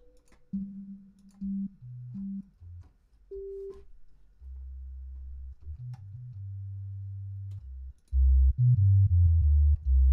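Sine-wave sub bass from the Harmor software synthesizer, played as a run of single low notes at different pitches, each a pure tone. The deepest and loudest notes come near the end.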